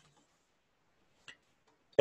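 A few faint, light ticks of a pen stylus tapping on a tablet or screen as dots are written, the clearest just past a second in.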